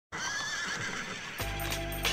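Opening of a trance dance track: a wavering, high-pitched sampled cry sounds first, then the bass and beat come in about one and a half seconds in.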